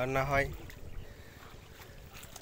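Swaraj 744 FE tractor's three-cylinder diesel engine running low and steady, with a short spoken word at the very start.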